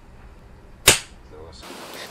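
A single shot from an air pistol: a sharp crack about a second in that dies away quickly.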